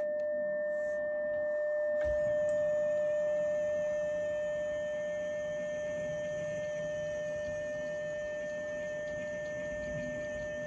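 Amateur radio transceiver switching from receiver hiss to a steady single-pitch tone with a fainter higher overtone. The tone begins abruptly as a button is pressed and holds unchanged, which fits the rig being keyed to send a tuning carrier. A faint low hum and a single click about two seconds in lie under it.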